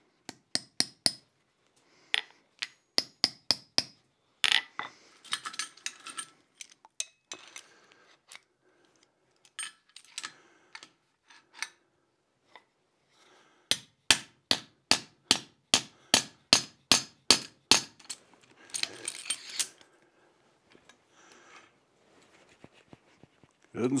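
Light metal-on-metal taps and clinks as a turned collar and the bar of an anvil hold-down clamp are seated in the anvil's pritchel hole. They come in runs of evenly spaced taps, a longer run of about four taps a second in the middle.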